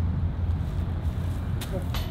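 A steady low rumble, with a single short click about one and a half seconds in.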